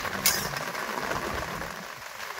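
A spatula stirring and scraping cooked pumpkin sabzi in a black kadhai, the food sizzling gently, with one sharp clack against the pan about a quarter second in.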